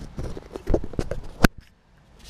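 Camera handling noise: a run of knocks and rubs on the microphone as the camera is moved and set in place, the sharpest knock about one and a half seconds in.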